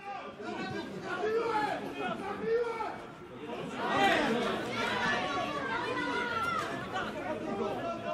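Several men's voices talking and calling out over one another, the chatter of spectators at the touchline; the words are not made out. The voices get louder about four seconds in.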